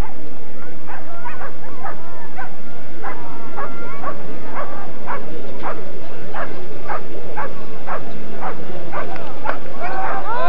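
Greyhounds barking and yelping excitedly in a run of short, sharp calls. The calls repeat about twice a second over the second half.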